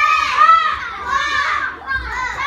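Children shouting loudly in very high voices, several drawn-out shouts one after another.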